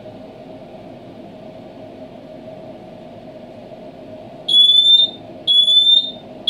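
Cavius thermal heat detector sounding its alarm, set off by the heat of the fire beneath it: loud, high beeps starting about four and a half seconds in, each a short, slightly rising tone, about one a second. Before the alarm starts there is only a steady low hum.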